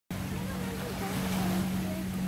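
Faint voices talking in the background over a steady low hum and an even wash of outdoor wind noise.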